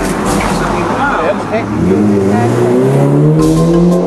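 A car's engine accelerating, its pitch rising steadily for about a second and a half in the second half.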